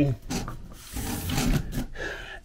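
A hand rubbing and sliding along a telescopic antenna pole: a soft scraping rustle lasting about a second in the second half.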